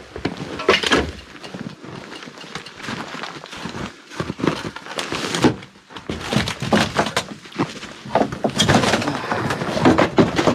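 Irregular crunching and swishing as someone climbs through deep snow and pushes past snow-laden conifer branches, a few louder strokes among quieter rustling.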